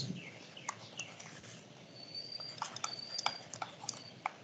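Faint, light clicks and taps from handwriting on a digital whiteboard, a few scattered at first, then a quick run of clicks in the second half as a word is written.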